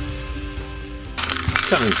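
Intro music fading out, then about a second in a sudden clatter of small plastic LEGO pieces poured out of a bag onto a table.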